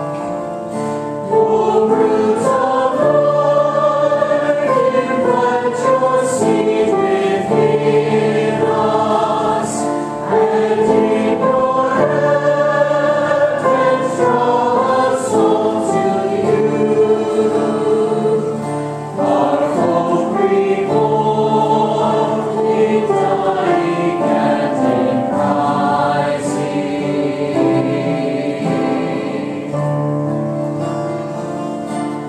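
Church choir singing a hymn in phrases of a few seconds, over steady low accompanying notes.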